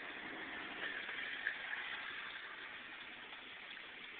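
Steady, fairly faint road and engine noise of a moving car, heard from inside the cabin as an even hiss.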